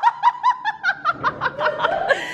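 A woman laughing hard in a quick run of short, high-pitched laughs.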